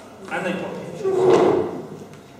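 Recorded animal sounds played back in a large hall. A short pitched, wavering call comes first, then a louder, rougher call about a second in.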